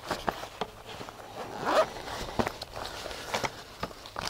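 Zip of a small soft carry case for an E-collar kit being drawn open in short strokes, with scattered clicks and rustles of the case being handled.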